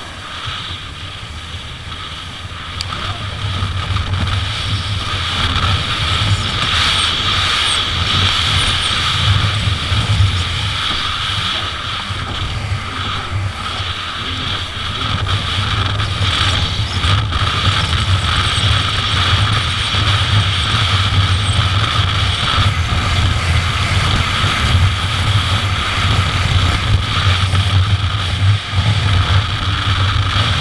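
Jet ski engine and jet pump running hard at speed, with the hiss of water spray alongside. The sound builds over the first few seconds, then holds steady.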